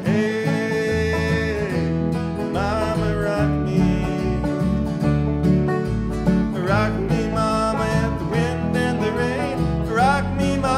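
Cross-tuned fiddle playing a bluegrass instrumental break full of sliding notes, over a guitar and banjo backing with a steady bass.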